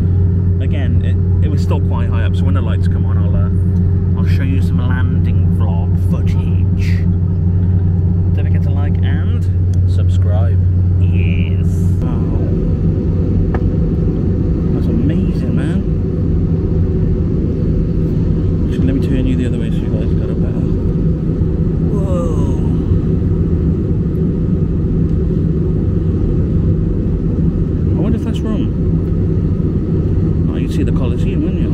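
Steady drone of a passenger jet's cabin in flight, a loud low hum with engine and airflow noise, with indistinct voices over it. About twelve seconds in, the low hum changes abruptly.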